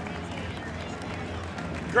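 Arena crowd noise: a steady murmur of many voices with some scattered clapping.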